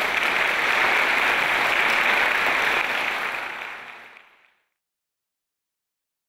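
Audience applauding, fading out from about three seconds in and cut to silence about a second and a half later.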